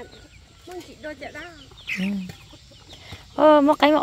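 Free-ranging chickens clucking quietly in short calls, then a loud voice calls out near the end.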